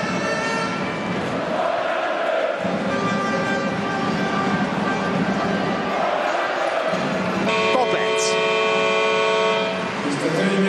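Arena crowd noise with faint horn-like tones. About seven and a half seconds in, a loud steady multi-tone horn sounds for about two seconds: the arena's buzzer signalling the end of the first half of a handball match.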